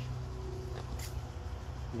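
Steady low background rumble, with one short click about a second in.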